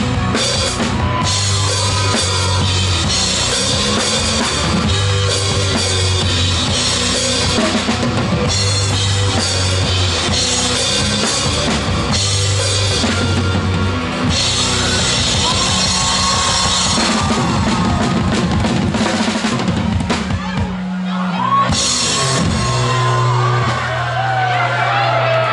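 Live rock band playing loud: drum kit with cymbals and electric guitars. About twenty-one seconds in the low end drops out briefly, then a held low note and sliding guitar notes come in near the end.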